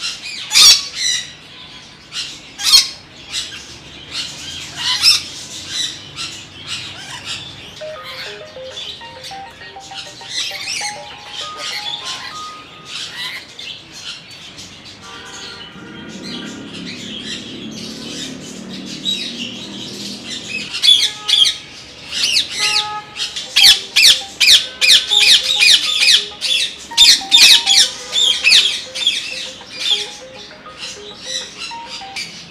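Many parrots squawking and screeching, with short, sharp calls piling on top of one another and thickest in the last third.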